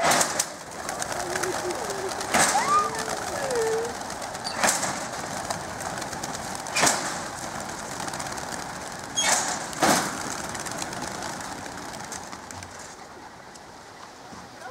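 A released flock of racing pigeons flapping away in a dense whirr of wingbeats that fades as the birds climb off, crossed by about six sharp cracks.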